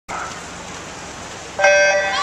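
Electronic start horn of a swimming race: a loud, steady, multi-pitched beep that sounds suddenly about one and a half seconds in, the signal for the swimmers to dive. Before it, only faint pool-hall background.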